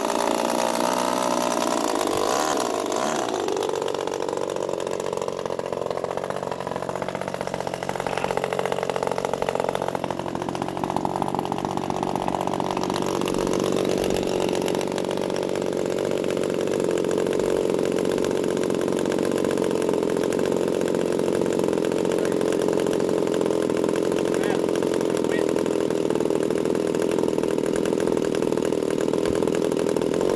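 VVRC 20cc gasoline twin engine of a large RC model plane running in a pre-flight run-up, its revs dipping and rising several times and climbing higher. About halfway through the revs drop and it settles into a steady lower speed.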